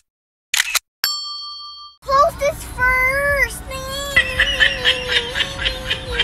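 Two short whooshes from an animated intro, then a bell-like ding about a second in that rings and fades. From about two seconds in, a child's voice follows, drawn out in a long wavering held pitch.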